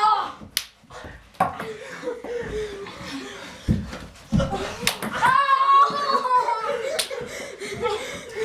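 A few sharp clicks and smacks of ping pong balls striking walls and bodies, with a couple of dull thumps, amid boys' yelling and laughter.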